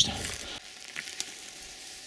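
Faint steady hiss with a couple of light ticks about a second in.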